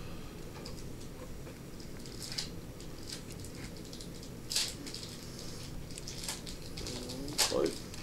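Steady low room hum with a few faint, short scrapes and ticks of scissors blades being worked down into a narrow gap at the edge of a glass counter.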